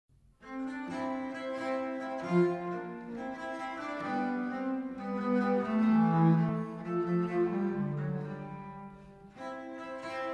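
Consort of viols (bowed string instruments) playing slow Renaissance polyphony in several parts, with long held notes. The phrase dies away shortly before the end and a new one begins.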